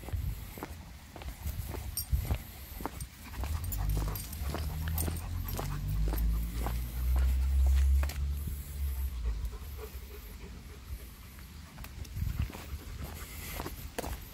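Long-coated German Shepherd sniffing along the ground and a hedge in quick, short sniffs. A low rumble swells in the middle and fades by about eight and a half seconds.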